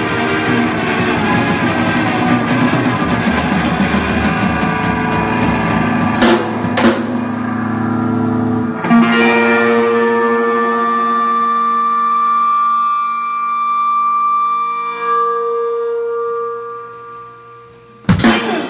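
Live band of electric guitar and drum kit playing a reggae groove, breaking off with drum and cymbal hits about six and nine seconds in. A held note then rings on by itself and fades away, and the drums start up again right at the close.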